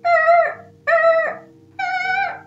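Three high-pitched, drawn-out vocal calls, about one a second, each holding its pitch and then dropping a little at its end, over a faint steady hum.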